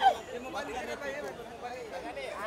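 Several people talking over one another, with a short loud call at the start followed by lower chatter.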